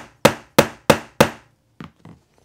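Claw hammer striking a metal snap-button setting tool, four sharp ringing metal strikes about three a second, hitting harder to crush and flare the post of a heavy-duty snap button through jacket fabric. The strikes stop after about a second and a half, and a faint knock follows near the end.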